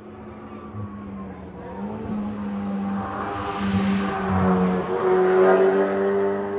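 A rally car's engine approaching unseen and growing steadily louder, its note stepping up and down several times as it is driven hard through the gears.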